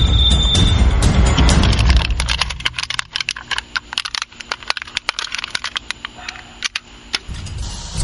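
Dramatic background music for about the first two seconds, then a fast, irregular crackle of small clicks from a shot-through aluminium can of sparkling water held in a hand.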